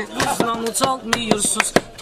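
The percussion beat of a meyxana performance: a quick run of sharp percussive clicks, with voices singing briefly in the middle.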